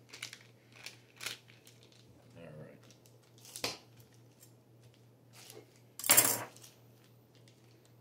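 Plastic cheese packet being handled and cut open: a few light clicks and rustles, then a loud, short rip of the plastic about six seconds in.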